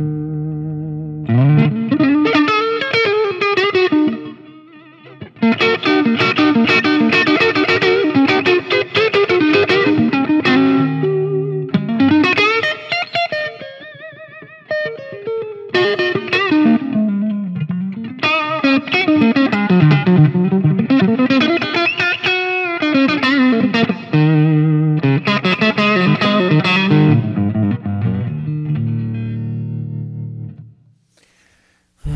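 Charvel Super Stock SC1 electric guitar played with distortion: riffs and lead lines, with notes bending up and down in pitch. There are short breaks about four seconds in and again about halfway through.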